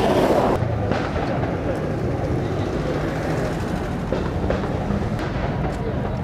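Cars driving slowly past at low speed, their engines running with a steady low rumble, after a short loud rush of noise at the very start.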